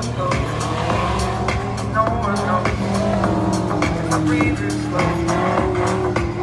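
Race car engine revving up and down as the car is driven hard through an autocross run, heard under background music with a steady beat.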